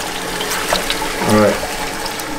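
Steady running and splashing of water from the spray bar of a spinning spiral gold-concentrator wheel, with the water draining off into the catch tub. A brief word is spoken about a second and a half in.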